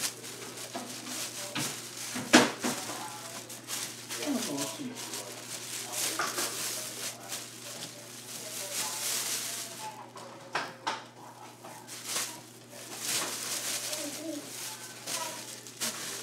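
Indistinct voices talking in the background, with scattered knocks and clatter; a sharp knock about two seconds in is the loudest sound.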